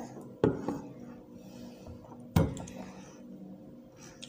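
Two sharp knocks of tableware being handled, about two seconds apart.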